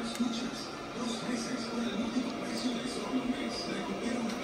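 Television audio playing in the background, faint speech and music, over a steady low hum.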